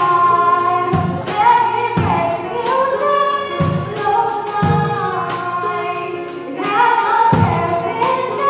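A female vocalist singing a slow pop song live, accompanied by grand piano, electronic keyboard and a drum kit. The drums keep a steady beat, with a low drum thump about once a second and a cymbal ticking several times a second.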